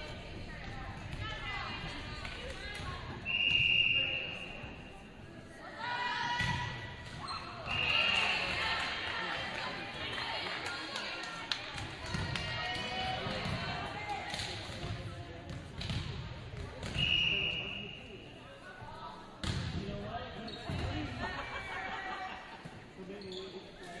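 Referee's whistle blown in three short blasts during a volleyball match, about a third of the way in, at a third of the way, and again after the midpoint, with a volleyball being hit and bounced on the hardwood in a reverberant gym. Spectators talk and call out throughout.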